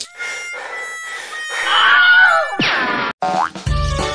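Edited soundtrack of cartoon-style sound effects: thin held tones, then a steep falling 'boing'-like glide about two and a half seconds in. After a brief cut-out, music with a heavy beat comes back in near the end.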